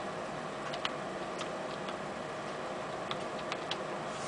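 A few light, irregularly spaced clicks of computer keyboard keys being typed, over a faint steady hum.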